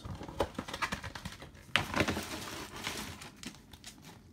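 Foil trading-card packs rustling and crinkling as they are handled, with scattered light taps and clicks, busiest in the middle and thinning out near the end.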